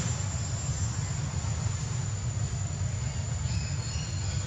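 Steady low rumble with a constant thin high-pitched whine above it, and a few faint high chirps near the end.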